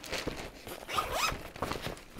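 Zipper on a fabric compression packing cube being pulled open in a few short strokes.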